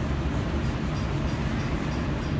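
Steady, low mechanical background noise of a working auto body shop, with no distinct strokes or changes.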